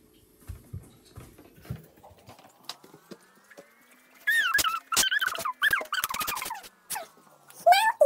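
A few soft knocks of things set down on a table. Then, about four seconds in, a loud, high, wavering voice-like call lasting some two and a half seconds.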